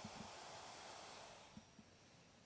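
Near silence: faint room hiss with a few faint soft knocks.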